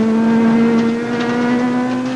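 Rally car engine held at high revs, flat out on a gravel stage, heard from on board: one steady engine note that creeps slightly up in pitch.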